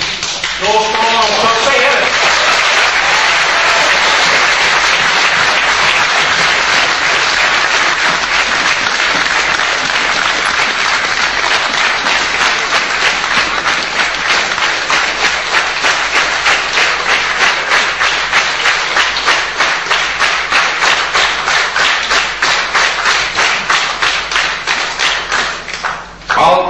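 An audience applauds a speaker, a dense sustained clapping that grows into even, rhythmic clapping in the second half.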